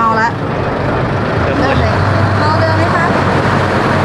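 People talking, with a steady low engine rumble underneath through the middle.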